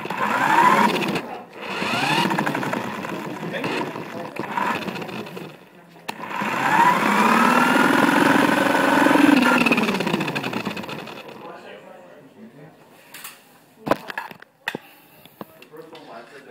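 Remote-control model car's motor whining up and down in pitch as it speeds up and slows, in two short runs and then one longer run of several seconds. A few sharp knocks come near the end.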